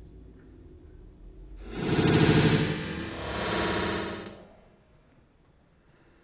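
A watermelon dropped from a height smashing on pavement: one loud burst starting about two seconds in, swelling twice and dying away over about two and a half seconds.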